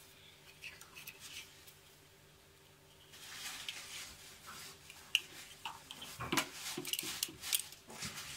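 Light handling sounds of multimeter test leads and alarm-panel wires: faint rustling and small clicks begin about three seconds in and grow more frequent near the end, as a wire is freed from its terminal to put the meter in the circuit. A faint steady low hum runs underneath.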